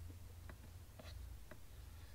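Quiet room tone with a low steady hum and a few faint, light clicks about every half second.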